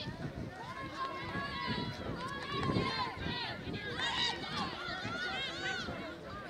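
Several voices shouting and calling over one another at a soccer game, with no clear words.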